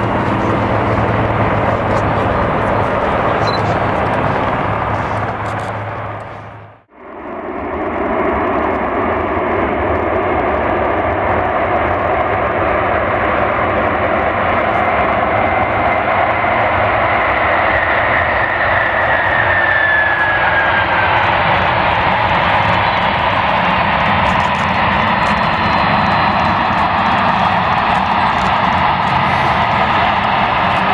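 Steady aircraft noise with a low hum, which dips out sharply about seven seconds in. It returns as the jet engines of Air Force One, a Boeing VC-25A, running steadily as it taxis, with a faint falling whine partway through.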